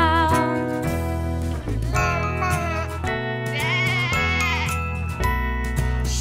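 Children's animal-sounds song playing, with a wavering, sheep-like bleat about three and a half seconds in.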